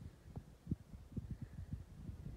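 Faint, irregular low thumps and rumble, several a second: handling noise from a handheld camera being carried over rough ground.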